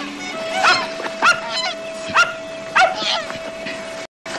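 An animal giving five short, sharp yelping calls, each with a quick rise and fall in pitch, over a held note of background music.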